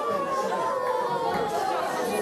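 Girls' voices in mock wailing and sobbing, one long wail falling slowly in pitch over crowd chatter: a staged lament for the ritual burial of the double bass.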